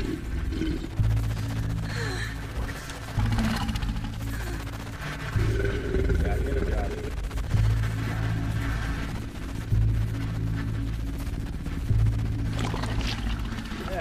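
Horror short-film soundtrack: dark music built on a low bass pulse that hits about every two seconds, with faint voices under it. Right at the end comes a loud shriek falling in pitch.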